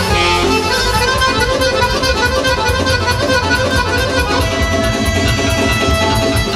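Guerrini button accordion playing a fast folk melody over a steady low beat, with quick even clicking of spoons played as percussion against it.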